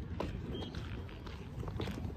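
Low, steady rumble of wind and handling noise on a handheld phone's microphone as it is carried, with a few faint knocks.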